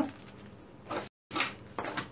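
Soft handling sounds of a thin skived leather shoe upper pressed and moved by hand on a cutting mat: a few faint brushes and light taps, with the sound cutting out completely for a moment about a second in.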